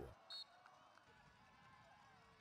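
Near silence: faint football-game ambience, with one short high blip about a third of a second in.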